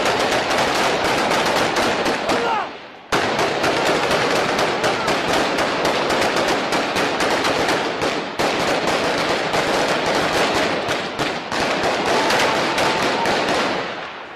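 Dense, continuous automatic gunfire from rifles, many rapid shots overlapping with no pause. The firing dips briefly just before three seconds in, then resumes abruptly.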